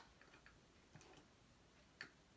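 Near silence: room tone with a few faint, light clicks of small items being set down on a tray.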